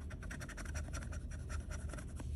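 A metal scratcher tool scraping the latex coating off a paper scratch-off lottery ticket in rapid, short strokes.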